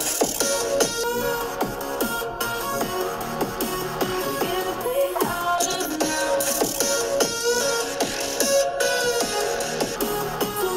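Electronic dance music playing through the 2019 15-inch MacBook Pro's two built-in speakers.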